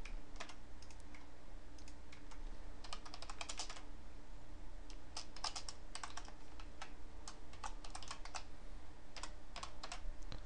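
Computer keyboard typing: quick runs of keystrokes in several bursts, with short pauses between them.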